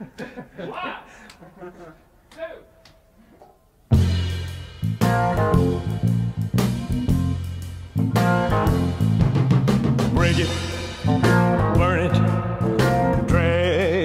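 Faint studio talk, then about four seconds in a rock-blues rhythm section of drums, bass and electric guitar starts the take at full volume and settles into a heavy, steady groove. A male lead vocal comes in near the end.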